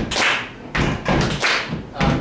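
A rhythmic beat of short thumps and sharp taps, about four or five strokes in two seconds, kept as backing for an improvised rap.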